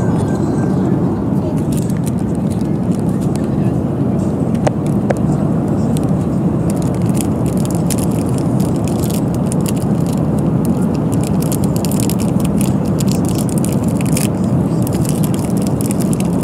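Steady cabin noise of a Boeing 737 airliner in cruise: a constant low noise of engines and airflow. Light clicks and rustles of handling sound over it in the second half.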